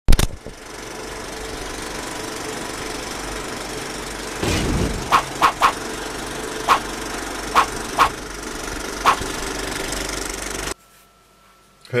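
Sound effects for an animated intro: a loud hit, then a steady mechanical rumble with a whoosh about four and a half seconds in. A series of seven short beeps follows, and the rumble cuts off suddenly about a second before the end.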